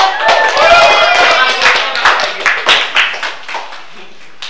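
A classroom of students clapping, a round of applause that thins out and fades near the end, with voices over it in the first second or so.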